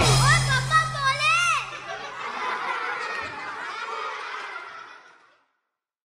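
A baby squealing and cooing in high, sliding calls for the first second or two, then fainter babbling, over a low held note from the music that stops about two seconds in.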